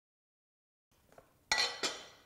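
Glass slow-cooker lid clinking twice in the second half as it is lifted off the pot and set down on the granite counter, each clink ringing briefly.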